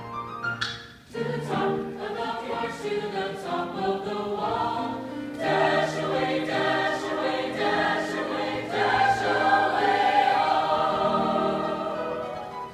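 A large mixed choir singing in chorus. There is a short rising vocal swoop and a brief break about a second in, then the singing grows fuller and louder from about halfway through.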